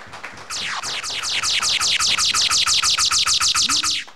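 A rapid train of high, falling chirps, about eight a second, growing louder over the first second and then holding steady before cutting off suddenly.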